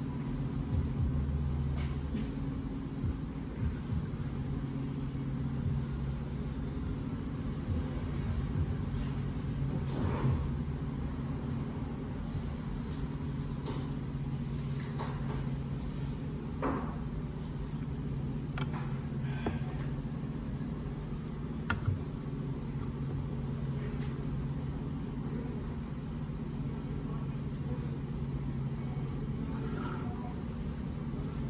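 Steady low hum of background noise, with a few faint clicks and taps.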